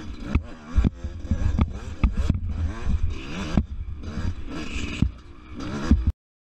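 Dirt bike engine revving up and down repeatedly as the throttle is worked, with short knocks and clatter from the bike over the rough trail.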